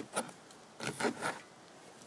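A kitchen knife cutting fresh rowan leaves on a wooden cutting board: a few short, scratchy strokes of the blade through the leaves and against the wood. The leaves are being cut so that their cell structure breaks, ahead of fermenting them into tea.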